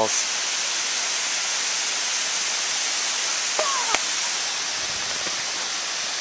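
Pratt's Falls, a tall waterfall spilling down a gorge's rock face, with the steady, even rush of falling water.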